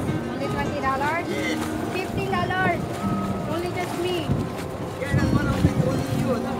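Indistinct voices talking, the words not made out, over the steady low rumble of small motorboats and water.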